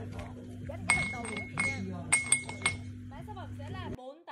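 A glass tumbler clinking about four times, each stroke ringing briefly, as a cat's paw and head knock against it. A steady low hum runs underneath.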